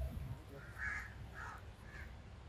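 A crow cawing faintly three times, short harsh calls about half a second apart, over a low rumble.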